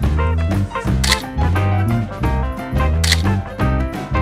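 Background music with a steady beat and a pulsing bass line, with two bright, sharp hits about two seconds apart.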